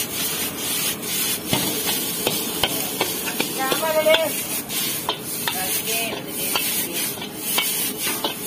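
Metal ladle scraping and knocking against a large black wok as noodles are stir-fried and tossed over high heat, with a steady sizzle underneath. A sharp click comes every second or so, and a short pitched sound is heard about halfway through.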